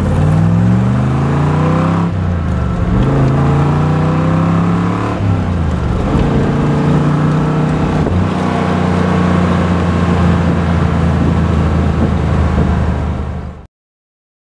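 1966 Corvette L79's 327 small-block V8 through side-exit exhaust pipes, accelerating hard up through the gears. The pitch climbs, drops at two gear changes about 2 and 5 seconds in, then holds steady as the car cruises. The sound cuts off suddenly near the end.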